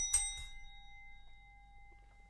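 Stemmed wine glass clinked in a toast: two quick clinks at the start, then a clear ringing note that fades slowly.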